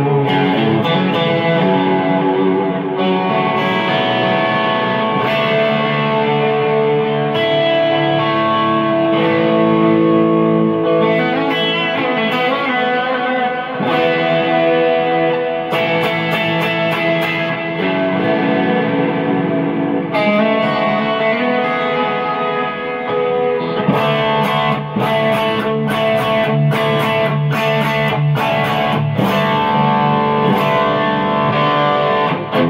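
Electric guitar played through a TC Electronic G-System multi-effects floor unit, on a preset with a compressor and a BB Preamp overdrive pedal switched in: lightly driven held notes and chords, broken by choppy strummed strokes that come thickest in the last few seconds.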